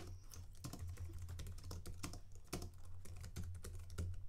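Typing on a computer keyboard: a quick, uneven run of key clicks, over a steady low hum.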